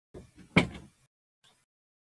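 A door being shut: a few light knocks and then one solid thump about half a second in, dying away quickly, with a faint tap after.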